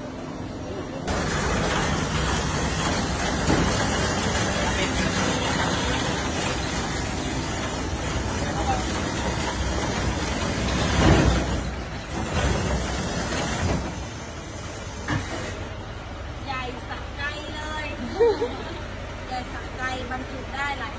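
A long, loud hissing from the glass-sided car-delivery truck. It starts about a second in, swells to its loudest near eleven seconds and dies away around fourteen seconds, leaving quieter voices.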